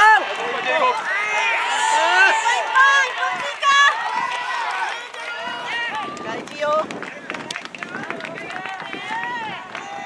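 Many spectators shouting cheers together at a soft tennis match, strongest in the first half. In the second half, sharp hits of rackets on the soft rubber ball come through the voices.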